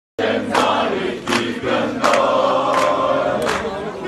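A large crowd singing an Albanian folk song together in unison, loud and outdoors. Sharp clap-like accents fall in rhythm about every three-quarters of a second.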